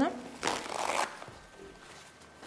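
A sheet of paper towel torn off a roll and handled: one short papery rip of under a second, about half a second in.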